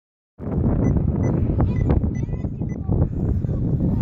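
Wind buffeting the microphone as a loud, continuous low rumble, with a few short high chirps and scraps of voices over it.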